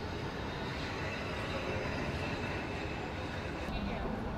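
Steady low rumble of a passing vehicle, with a faint high whine through the middle of it.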